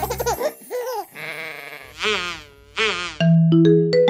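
The backing music stops, then a sheep bleats several times with a wavering call. Just after three seconds in, a bright xylophone-like jingle begins.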